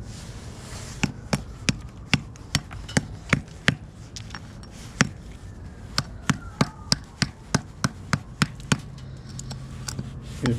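Hammer striking a black-crusted lump on a wooden stump, cracking the crust off it: a steady run of sharp blows, about three a second, starting about a second in.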